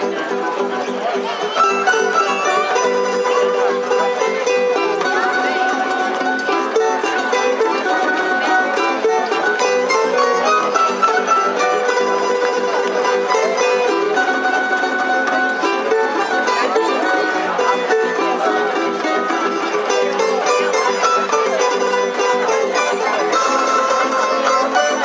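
Tamburica ensemble playing live: small prim and larger guitar-shaped tamburicas plucking the melody over a plucked double bass (begeš). The music gets louder about a second and a half in.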